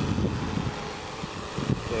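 DJI Matrice 600 Pro hexacopter's rotors whirring steadily as the drone flies in low to land, with wind buffeting the microphone.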